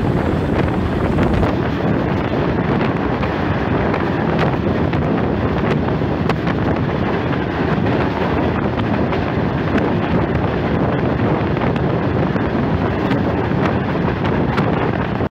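Wind rushing over the microphone at the open door of a passenger train running at speed, over the steady rumble and rattle of its wheels on the rails. The noise is loud and continuous.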